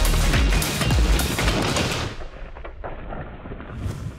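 Soundtrack music with heavy drum hits. About halfway through it turns muffled and fades down, with a brief swell just before the end.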